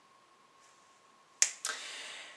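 Near silence with a faint steady high tone. About a second and a half in come two sharp clicks of a man's mouth, a quarter second apart, followed by a short breath in as he readies to speak again.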